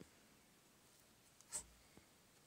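Near silence, broken once about one and a half seconds in by a brief scratchy rub.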